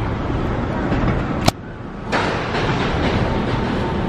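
City street traffic noise, a steady rumble of passing vehicles. A sharp click about a second and a half in, after which the sound dips for about half a second before the traffic noise returns.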